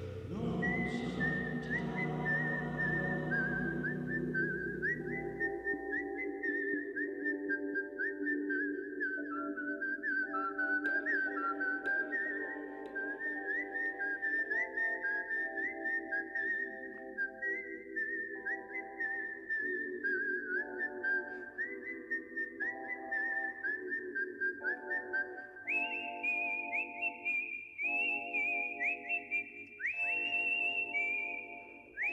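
A whistled melody carries the tune over a gently repeated plucked chord accompaniment. The deep bass drops out after several seconds, and the whistling climbs higher near the end.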